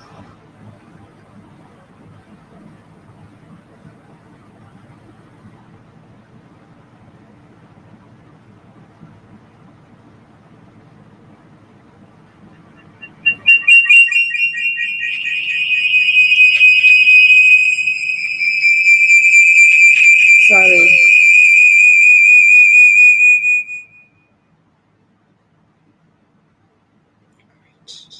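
Audio feedback whistle in the live-stream sound: after a stretch of faint hum, a loud, high-pitched steady whistle starts about halfway through, sinks slightly in pitch, and cuts off suddenly near the end. It is feedback that she suspects is coming from a phone hooked into her setup.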